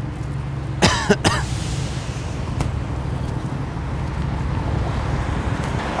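Road traffic: car engines humming steadily, with one car passing on the road, its tyre noise swelling and fading in the first few seconds. Two short vocal bursts, like a cough, come about a second in.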